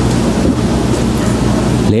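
A loud, steady rushing noise with a low hum under it fills the pause between spoken phrases. It cuts off suddenly near the end as a man starts speaking.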